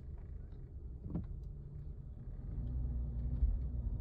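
Car driving slowly, heard from inside the cabin: a steady low engine and road rumble that grows a little louder past halfway, with a short knock about a second in.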